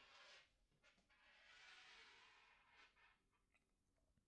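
Near silence, with faint soft rubbing: a short swish at the start and a longer one from about a second in to about three seconds, plus a few light clicks, from hands moving over the watch and tabletop.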